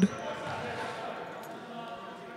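A low murmur of background voices in a gymnasium, with a faint knock or two.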